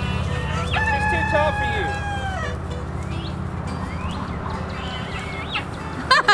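A rooster crowing once about a second in, a long held call that drops away at its end, followed later by a few short rising calls from the flock.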